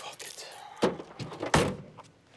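A car's rear hatch slammed shut: two heavy thuds less than a second apart, the second the louder.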